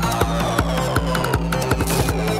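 Tekno track: a kick drum on every beat at about 160 beats a minute, over a held bass line that steps in pitch, with short higher percussion hits between the kicks.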